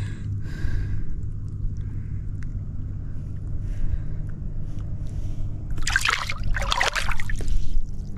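Water sloshing and trickling around a hand holding a largemouth bass by the lip in the lake while it is revived. The splashing grows loud near the end as the fish kicks free and swims off. A steady low hum runs underneath.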